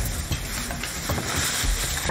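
Thin plastic grocery bags rustling and crinkling as they are handled, with a few small clicks.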